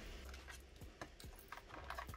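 Faint, scattered light clicks and taps as a small metal keychain charm is handled and fastened on.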